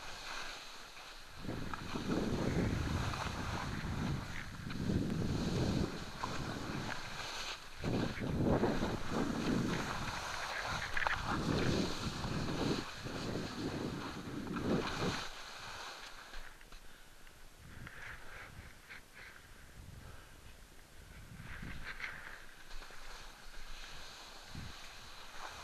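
Wind rushing over a head-mounted camera's microphone during a fast ski descent, with skis hissing and scraping over rough spring snow. The gusting wind noise comes in strong surges for most of the run and then eases about two-thirds of the way through, leaving mostly the quieter scrape of the skis.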